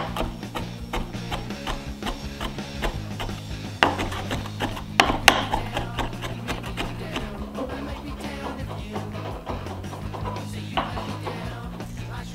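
A large kitchen knife chopping parsley and garlic on a cutting board: a fast, uneven run of sharp taps, with a couple of louder strikes around four and five seconds in. Background music plays underneath.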